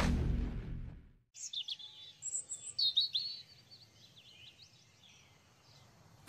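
Music fades out over the first second, then songbirds chirp and trill in quick short high calls, loudest about three seconds in and thinning out soon after.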